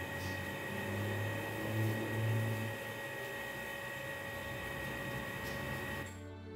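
A steady high-pitched whine over even background hiss, with a low hum that swells louder between about one and three seconds in.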